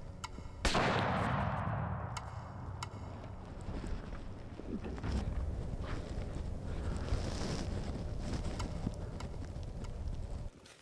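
A single shot from a .50-caliber Knight Revolution muzzleloader, about half a second in, its report rolling away through the woods over roughly two seconds.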